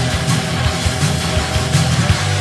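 Crust punk music, instrumental passage: heavy distorted guitar and bass holding low chords over a steady drum beat.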